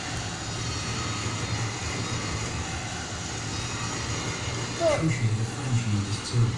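A steady low droning hum runs under the window, with a short spoken word near the end.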